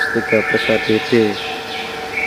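A man speaking, over a steady high-pitched whine in the background; the talk stops about two-thirds of the way in and the whine carries on.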